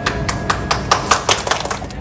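Plastic packaging being handled and crinkled: a quick, irregular run of sharp crackles and clicks.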